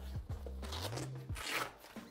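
Rustling and crunching of a heavy-duty padded fabric bag as hands dig inside it, with the loudest burst of rustling about one and a half seconds in.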